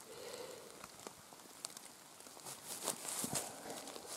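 Faint rustling and crackling of dry fallen leaves as a hand moves through the leaf litter, with a few small clicks and a louder stretch of rustling about three seconds in.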